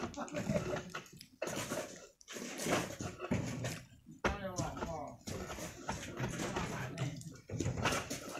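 Men's voices talking and calling out in short bursts with brief pauses between, one call rising and falling about halfway through.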